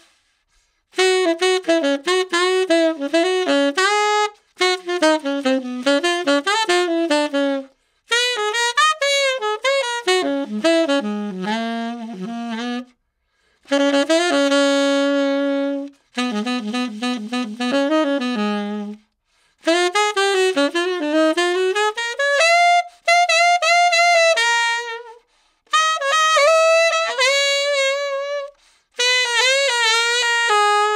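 Tenor saxophone with a Vandoren V16 T7 medium-chamber metal mouthpiece and a Rigotti Gold 4 medium reed, playing a fast jazz blues line unaccompanied. It goes in about eight phrases broken by short rests for breath. The player finds this mouthpiece a little stuffy.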